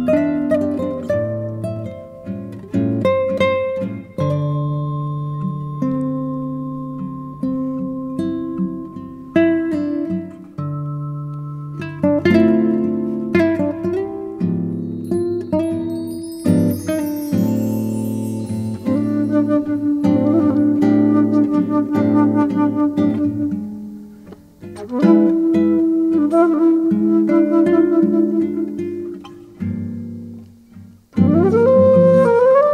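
Classical guitar playing a Brazilian-style piece: plucked notes and chords that ring and fade, with stretches of rapid repeated notes in the second half.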